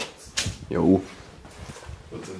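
A man says a short "Ja", just after two sharp clicks or knocks.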